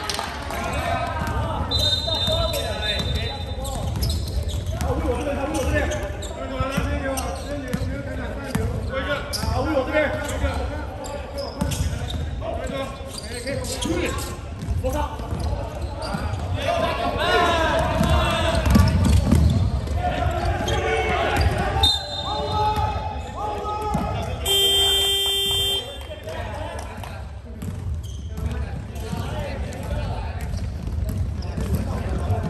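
Basketball being dribbled and bouncing on a sports hall court, with players' voices calling out and echoing in the hall. Roughly 25 seconds in, a steady buzzer tone sounds for about a second.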